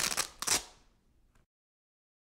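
Two brief rustling, scraping handling noises, as of hands moving objects, in the first half-second. They fade out, and then the sound drops to dead silence at an edit cut.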